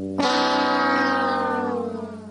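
A man's long, drawn-out vocal hum, held for about a second and a half and slowly falling in pitch.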